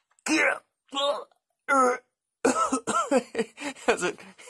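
A man grunting and straining in a mock wrestling grapple, holding himself in a headlock: three short grunts in the first two seconds, then a quicker string of them from about halfway.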